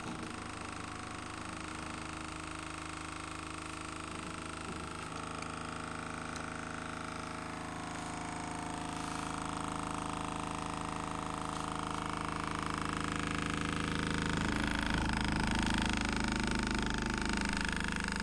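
Small DC motor running steadily as it spins a ring magnet above a copper coil: a steady whirring hum with several tones, growing gradually louder over the second half.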